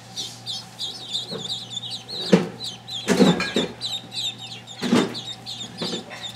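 A brood of day-old Indian Runner, Swedish and Cayuga ducklings peeping constantly, many short high chirps overlapping. A few brief louder noises break in about two, three and five seconds in.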